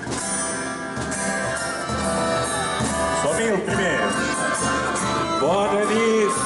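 Live acoustic folk band with violin and accordion playing, with singing; in the second half a voice over the loudspeakers rises above the music.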